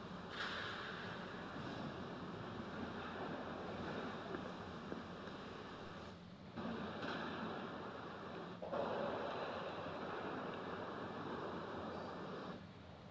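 Steady hiss of room noise picked up by the church's microphones, with no clear footsteps or other distinct sounds. Its level jumps up and down abruptly a few times.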